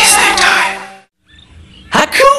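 Tail of a TV channel ident jingle: music with sliding-pitch sound effects, fading out about a second in. After a brief gap, a loud new sound starts right at the end.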